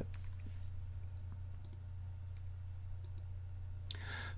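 A few faint, scattered computer mouse clicks over a steady low hum.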